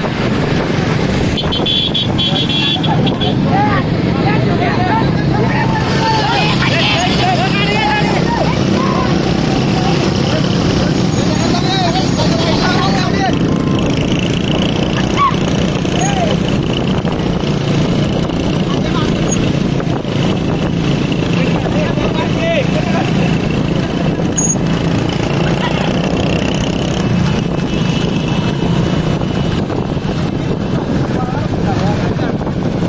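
Motorcycle engines running steadily with wind buffeting the microphone, while riders and onlookers shout and whoop throughout.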